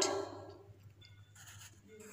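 Faint scratching and light ticks of a pencil writing on notebook paper, after the tail end of a woman's spoken word.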